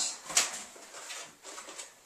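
Cardboard scraping and rustling as a boxed pistol is pulled out of a cardboard shipping carton, with one short scrape about half a second in and faint rustling after.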